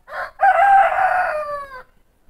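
A rooster crowing once: a short first note, then a long held call that falls in pitch as it ends.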